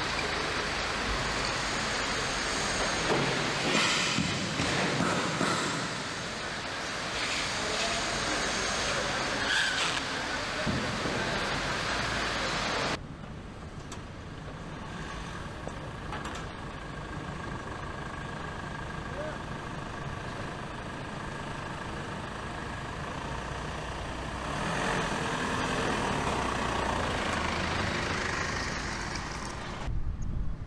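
Car assembly plant noise: a steady wash of machinery and workshop sound that drops suddenly to a quieter hum about halfway through, then rises again near the end.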